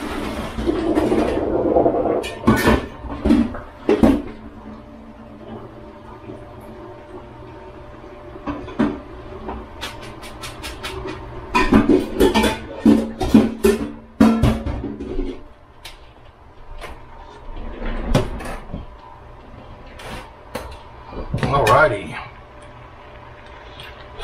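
Kitchen clatter as spaghetti is drained: scattered knocks and clanks of pots and utensils, busiest in the first few seconds and again around the middle.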